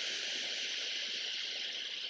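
A steady high-pitched hiss, easing off slightly toward the end.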